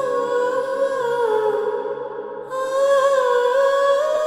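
Background score: a wordless hummed vocal melody in two long, slowly wavering phrases, with a short break a little past halfway.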